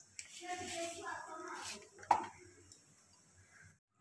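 A faint voice in the background, then a single sharp knock about two seconds in. After that it is nearly quiet until the sound cuts off suddenly just before the end.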